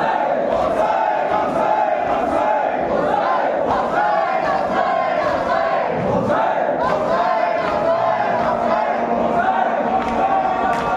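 A large crowd of men chanting a marsiya together, many voices overlapping continuously, with the slaps of matam (hands beaten on chests) mixed in.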